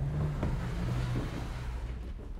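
Low steady hum of the lecture room, with a few faint knocks.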